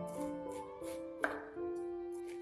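Chef's knife slicing through a cabbage wedge onto a wooden cutting board: about four crisp cuts, the loudest a little past halfway. Background music with held notes plays throughout.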